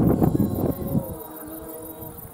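A group of people singing together while walking in procession, with a held note in the second half. A loud burst of noise fills about the first second.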